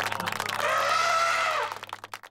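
A cartoon elephant trumpeting: one call about a second long that rises slightly and falls away, over a steady low note.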